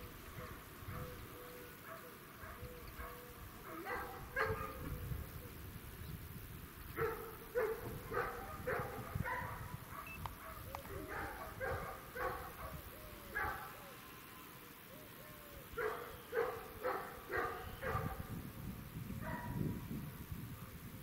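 A dog barking in bouts of several quick barks, with short pauses between the bouts.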